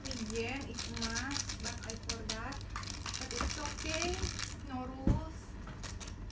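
Dense fine clicking and rustling as something is handled right at the microphone, under a woman's voice without clear words. A single loud thump about five seconds in.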